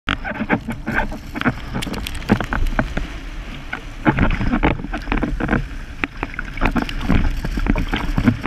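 Strong wind buffeting a boom-mounted action camera in a low rumble, mixed with irregular splashing and slapping of choppy water around the windsurf board and rig as the rider climbs up and hauls the sail upright.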